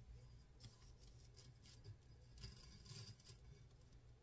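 Near silence: faint rustling and a few light taps as hands turn and rub the glitter-coated tumbler and its tape template.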